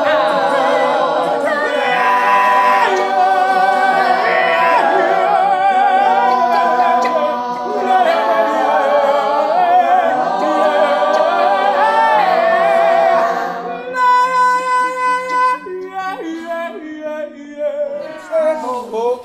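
Mixed-voice choir singing improvised a cappella music in dense, layered harmony. About fourteen seconds in the texture thins to a held low note with fewer voices moving over it, rising and falling in loudness.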